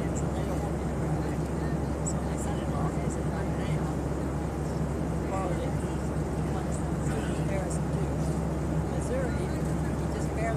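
Steady, unbroken drone of an airliner cabin in flight, with a constant low hum. Faint, indistinct voices of other passengers come and go beneath it.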